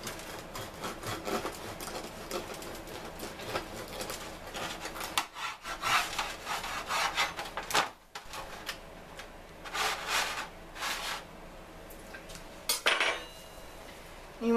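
A knife sawing lengthwise through a crusty loaf of Italian bread: a run of rasping strokes through the crust, then a few separate strokes and a sharp clack near the end.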